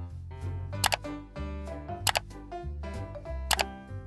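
Background music with three sharp mouse-click sound effects, each a quick double click, coming about a second and a quarter apart and louder than the music.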